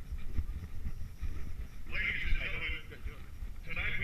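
Low wind rumble and handling noise on a body-worn camera's microphone, with a distant, thin-sounding voice coming in about halfway through and again near the end.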